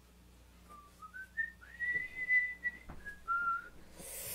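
A man whistling a short tune: four quick notes rising in steps, one long held high note, then two lower notes.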